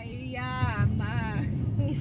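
A woman singing one long, wavering note, then a shorter one, over the low rumble of a car moving on the road.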